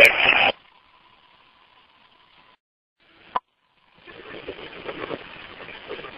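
Fireground radio traffic: a transmission ends with a last word, then a gap of near silence with a faint steady tone, a single sharp click about three seconds in, and a rising hiss of the open radio channel before the next call.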